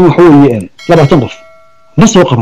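A man speaking, then, about a second in, a bell-like notification chime that rings steadily: the sound effect of a YouTube subscribe-and-bell button animation.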